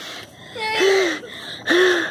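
Two loud, breathy gasps from a startled person, each with a short voiced note, about half a second in and again near the end.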